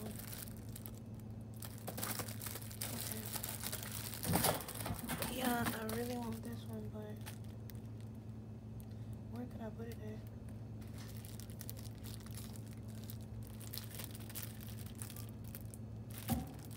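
Plastic shrink-wrap crinkling as wrapped canvas wall prints are handled and shuffled, with one sharper knock about four seconds in, over a steady low electrical hum.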